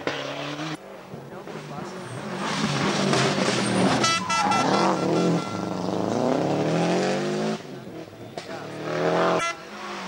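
Rally car at full throttle passing on a special stage, its engine note rising and falling through gear changes, then climbing steadily as it accelerates away.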